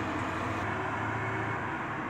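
Steady low background hum with a faint even hiss, without distinct knocks or clinks.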